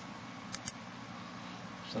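Two short, sharp clicks in quick succession about half a second in, over a steady low background hiss.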